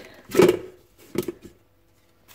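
Plastic lid of a Bellini multicooker being unlatched and lifted off its stainless steel bowl: one sharp clunk just under half a second in, then a couple of lighter knocks about a second later.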